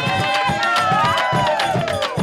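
A crowd of voices of a Venezuelan parranda group singing together in long, gliding notes, over a steady beat of hand claps and percussion.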